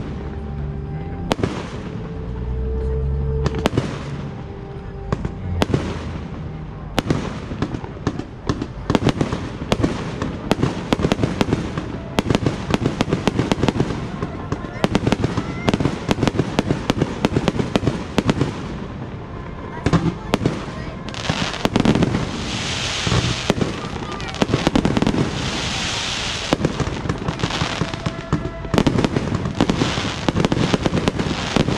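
Fireworks display: aerial shells bursting in rapid succession, with sharp bangs and crackles throughout. A little past two-thirds of the way in the barrage thickens into a run of dense crackling.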